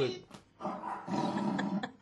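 A man imitating a tiger's growl with his voice: a rough growl lasting just over a second, starting about half a second in.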